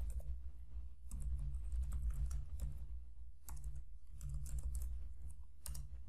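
Typing on a computer keyboard: irregular key clicks over a low steady hum.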